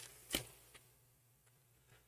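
Near silence with one light click about a third of a second in, from tarot cards being handled as a card is drawn and laid out.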